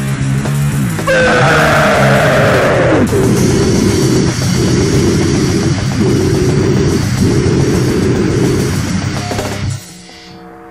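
Loud, distorted hardcore punk recording with guitars and drums. About a second in, a high sound slides down in pitch over the band, and the band stops abruptly just before the end.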